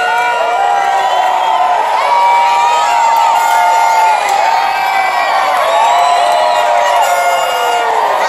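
Crowd of fans cheering and yelling, many high voices overlapping in long held calls.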